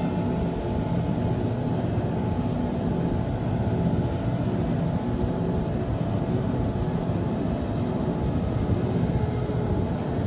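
Self-propelled feed mixer wagon running steadily, its diesel engine and front loading cutter working as it takes in straw from a bale stack.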